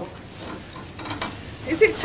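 Thin sheets of filo pastry rustling and crackling faintly as they are lifted and handled by hand.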